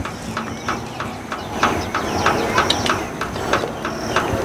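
Quick, regular clicking or tapping, about three clicks a second, over a faint high steady tone.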